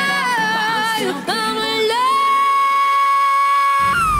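A male singer in a high, soprano-range voice over a band backing, his line bending and climbing into a long held high note about halfway in. Bass and drums come in just before the end.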